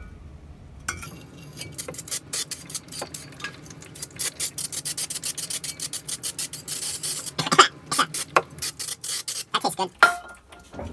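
Aerosol brake cleaner sprayed onto a brake drum. It hisses and sputters in rapid short bursts, starting about a second in, with a longer steadier hiss around seven seconds in.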